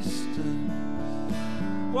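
Acoustic guitar strummed, its chords ringing in the pause between sung lines of a solo folk-pop song. A man's singing comes back in right at the end.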